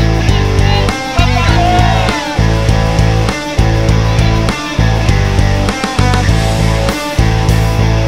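Rock music with guitar playing over a steady beat, its level dipping in a regular pulse about once a second.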